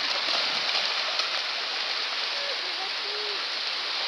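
Steady rush of shallow surf washing over a sandy beach, with splashing as dogs run through the water.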